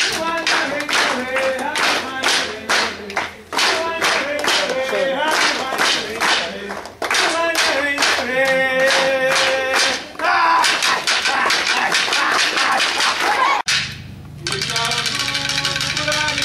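Voices singing or chanting over a steady beat of claps, about three a second. The sound cuts off abruptly near the end and gives way to a steady hum.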